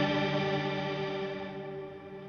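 Electric guitar chord ringing out through a Strymon BigSky reverb pedal with its tone control set to bright, the held chord and its reverb tail slowly fading.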